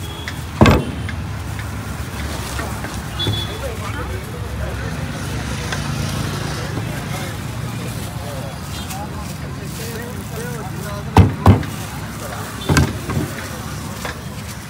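Steady hum of road traffic with background chatter of voices, broken by sharp knocks: one about a second in and a quick run of four near the end.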